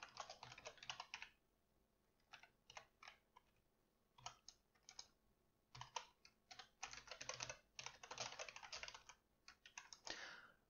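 Faint typing on a computer keyboard, in several quick runs of keystrokes separated by short pauses, the longest run in the second half.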